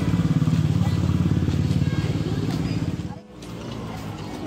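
Street traffic: a nearby motor vehicle engine running with a low, pulsing rumble that stops abruptly about three seconds in, leaving quieter street noise.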